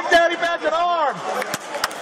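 A raised, shouting voice over the steady noise of a crowded arena, followed near the end by two sharp smacks about a third of a second apart.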